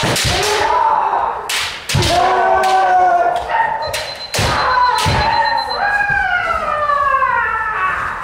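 Kendo sparring: long kiai shouts that slide down in pitch, overlapping from several fencers, among sharp cracks of bamboo shinai strikes and stamping of feet on a wooden dojo floor. The hall gives the hits and shouts a short echo.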